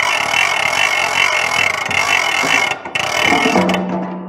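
Large capsule-toy vending machine's knob being cranked round, its mechanism giving a loud, continuous ratcheting clatter in two stretches with a brief break near three-quarters of the way through. The full turn dispenses a plastic capsule.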